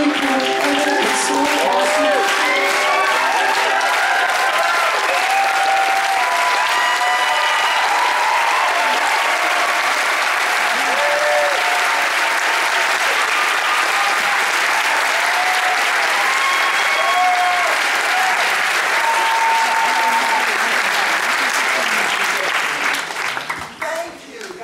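A large theatre audience applauding and cheering, with shouts and whoops over the clapping, after the last chord of a ukulele ensemble's song rings out in the first second. The applause dies down near the end.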